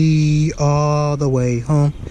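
A man's voice chanting long, wordless held notes on a steady pitch, dropping lower about half a second in and stepping down again near the end before breaking off.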